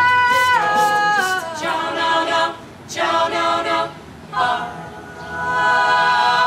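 Mixed-voice a cappella group singing in close harmony, with no instruments: held chords broken by short pauses, the last chord sustained for several seconds.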